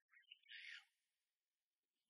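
Near silence: only faint, high-pitched fragments of sound, the strongest a brief hiss about half a second in.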